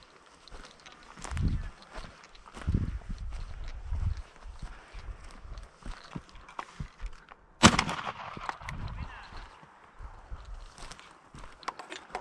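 A single shotgun shot about seven and a half seconds in, sudden and loud, dying away over a second or so, amid rustling camera-handling noise and wind rumble.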